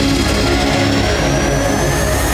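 News-channel opening theme music with a rising whooshing sweep building through it.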